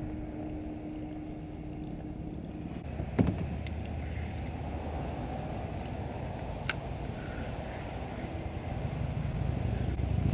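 Steady low outdoor rumble on the water, with a sharp click about three seconds in and another short click near seven seconds in.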